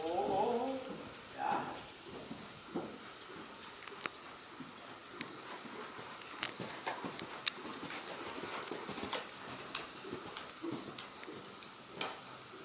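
Horse moving under a rider on sand arena footing: soft hoofbeats with scattered sharp clicks, after a short call in the first second or two.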